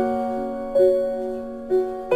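Slow instrumental piano music: held notes, with a new note struck about three-quarters of a second in and another near the end, each fading away after it sounds.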